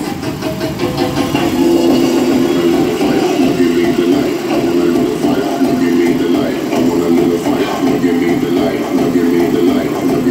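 Loud dance music played through large speaker stacks mounted on pickup trucks, with a steady pulsing beat.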